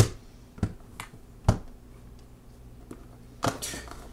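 Several short, sharp clicks and taps at irregular intervals, about six in all, from small hard objects being handled, over a faint low electrical hum.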